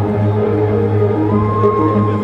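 Live band music: low, steady bass notes with a single held trumpet note that comes in about a second and a half in.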